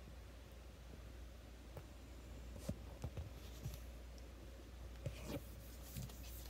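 Quiet room tone with a steady low hum and a handful of faint clicks and light taps, spaced irregularly about a second apart.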